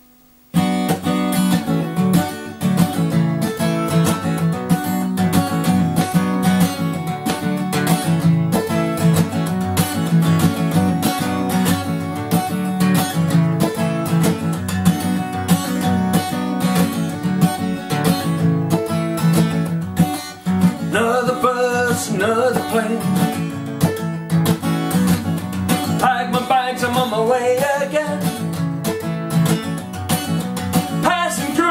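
Solo acoustic guitar starting a song's intro suddenly about half a second in and playing on steadily; a man's voice comes in singing about twenty seconds in.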